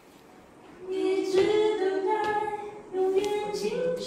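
Two voices singing unaccompanied in close harmony, working through a phrase together. It starts about a second in with held notes and pauses briefly just before three seconds, then resumes.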